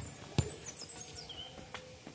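Small birds chirping faintly in quick, high, downward-gliding notes, with three sharp taps spread through the moment.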